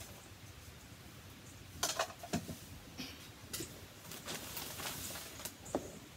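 Light kitchen handling sounds: a plastic measuring cup being emptied into a stainless steel mixing bowl, with scattered clicks and knocks against the bowl and a brief hiss, followed by hands working the mix in the bowl.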